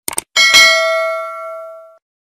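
Subscribe-button animation sound effect: two quick mouse clicks, then a single notification-bell ding that rings and fades out over about a second and a half.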